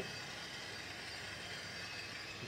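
Brass annealer's motor-driven case wheel turning, a faint steady mechanical hum with no knocks or clicks.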